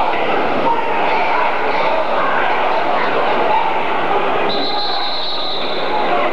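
Gymnasium crowd noise during a wrestling bout: many voices yelling and cheering in a steady din. A steady high tone sounds over it for about the last second and a half.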